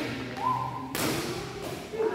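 Badminton rally: a racket strikes the shuttlecock with a sharp smack about a second in, among players' thudding footfalls on the court. A brief high-pitched squeak comes just before the hit.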